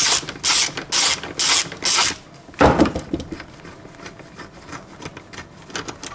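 Hand socket ratchet clicking in quick back-strokes, about two a second, as it undoes a bolt on a car seat's track. A louder knock follows a little before halfway, then lighter clicks and rattles.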